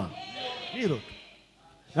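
A short, drawn-out voice with a wavering pitch, much fainter than the preaching around it, lasting just under a second.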